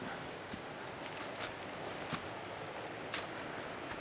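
Footsteps on dry leaf litter: a few faint crackling steps about a second apart over a steady rushing background noise.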